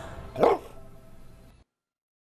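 A single short pitched call that rises and falls in pitch about half a second in, over the fading last chord of the background music, before the sound cuts off completely.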